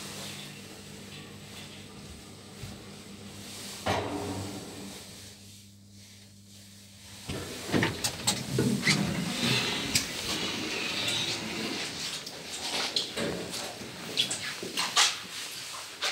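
KONE traction elevator: a steady low hum while the car runs, a single knock about four seconds in, then from about halfway on irregular clicks, clatter and knocks as the elevator door is opened and the rider steps out onto the landing.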